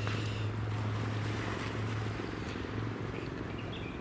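Steady low engine drone, easing off after about two and a half seconds, over a steady hiss of wind and sea.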